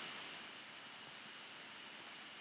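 Faint steady hiss of room tone and microphone noise, with no distinct sound events.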